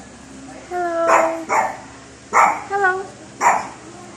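Chihuahua barking: a drawn-out whining note, then a string of about five short, sharp, high-pitched barks.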